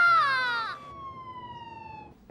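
A woman's long, high wailing cry, held on one pitch, breaking off under a second in. A faint tone follows, sliding slowly down in pitch as it fades.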